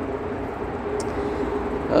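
Steady hum and air rush from the welding booth's electric exhaust fans running, with a brief faint high-pitched squeak about a second in.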